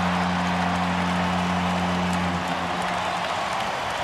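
Arena goal horn sounding one steady low note over a cheering crowd, signalling a home-team goal; the horn dies away about two and a half to three seconds in, leaving the crowd cheering.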